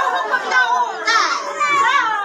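A group of excited, high voices calling out and singing over one another.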